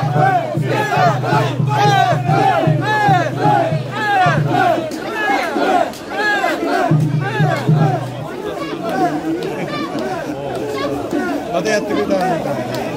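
A crowd of mikoshi bearers shouting a rhythmic carrying chant in unison, about two to three shouts a second, loud and close. The chant is steadiest in the first half and becomes looser later, over a low hum that comes and goes.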